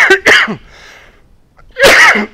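A man coughing hard in short bursts: two coughs at the start and another near the end. It is a coughing fit that he puts down to straining his voice.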